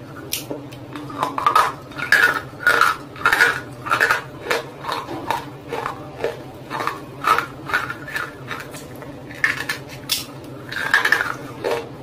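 Close-miked crunching and chewing of a hard roasted clay lump: sharp, crackly bites about twice a second, with a brief lull shortly before the end.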